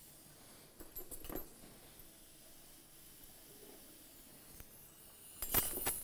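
Faint metallic clicks of dental surgical instruments as the implant insertion tool is detached from the implant, about a second in, then a short, louder noisy burst near the end.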